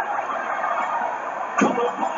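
Wrestling arena crowd cheering and yelling, with one louder yell about one and a half seconds in.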